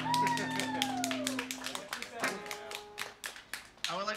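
A small audience clapping at the end of a song, while the band's last chord rings on and fades out in the first second and a half. Over the chord, one listener gives a falling whoop.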